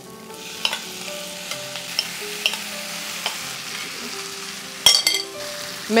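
Paneer cubes coated in a thick mint-coriander paste sizzling steadily as they drop into hot butter and onions in a non-stick kadai, with a spoon scraping and lightly tapping them out of a glass bowl. A sharper clatter comes about five seconds in.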